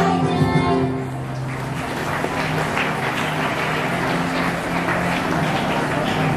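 A song with instruments ends about a second in, giving way to steady applause.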